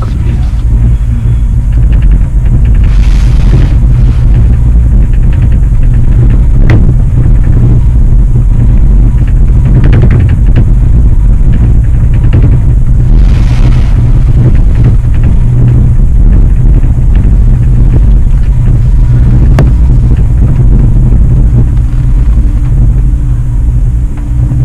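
Loud, steady low rumble inside a moving cable car cabin as it runs along the haul rope, with a few faint clicks.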